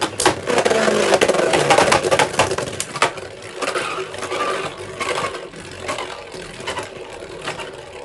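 Two Beyblade Burst tops, Super Hyperion and Union Achilles, spinning on a plastic stadium floor with a steady whirring hiss and many sharp clicks as they knock together and against the stadium. The sound is loudest in the first three seconds, then quieter with fewer clicks as the tops slow.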